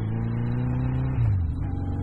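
1982 Yamaha XJ1100 Maxim's air-cooled inline-four engine running under way. A little over a second in, the revs drop and the engine note settles lower.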